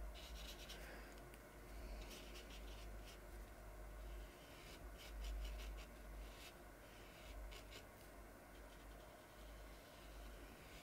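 Faint scratchy swishes of a round watercolour brush stroking across cold-pressed watercolour paper, in short groups of strokes a second or two apart, as paint is worked into a circle. A steady low rumble sits underneath.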